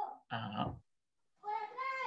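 A person's voice over a video call in two short fragments, with a pause of about half a second between them; the words are not clear enough to make out.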